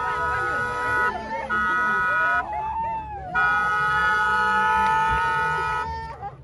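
Car horn sounding in long blasts: it is already on at the start, breaks off about a second in, sounds again briefly, then gives one long blast of about two and a half seconds near the end. Children's voices are heard underneath.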